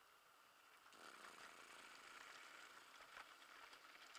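Faint rolling noise of a mountain bike's tyres over a gravel and dirt trail, with small clicks and rattles from the bike; it grows louder about a second in.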